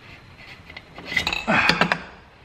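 Norton Commando's twin cylinder barrel being lifted off the pistons and studs: a quiet start, then metal clinking and clattering from about a second in, loudest near the end as the barrel comes clear.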